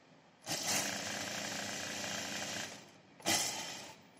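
Juki industrial flatbed sewing machine running at speed as a seam is stitched through the waistcoat lining: one steady run of about two seconds, then a shorter burst near the end.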